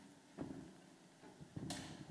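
Soft footsteps in a quiet room, a few light knocks, with a short rustling noise near the end.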